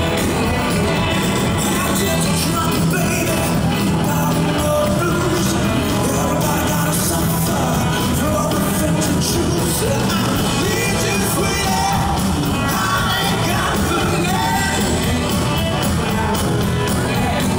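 Live blues-rock band playing at full volume: electric guitars and drums, with a man singing lead.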